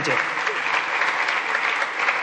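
Steady applause from many deputies clapping in the chamber. It follows the last words of a speech at the start.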